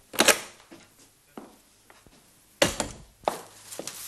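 About half a dozen irregularly spaced knocks and thuds in a small room. The loudest comes just after the start and another about two and a half seconds in.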